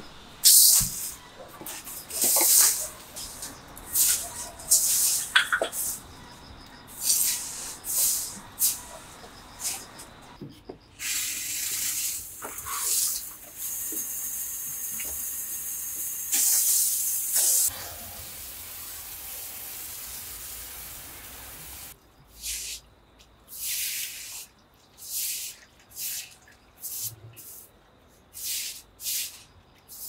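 A plastic-bristled broom sweeping leaves and debris across a concrete floor in repeated brushing strokes. Around the middle comes a steady hiss of water spraying from a garden hose, then the broom sweeps the wet concrete in strokes about once a second.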